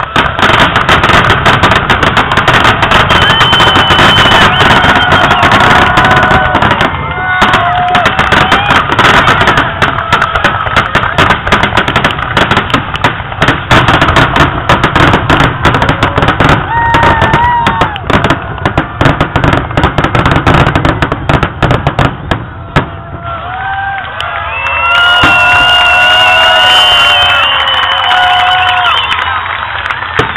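Fireworks finale: a dense, loud barrage of rapid bangs and crackling that runs for over twenty seconds, then thins out. Near the end the crowd cheers and whoops.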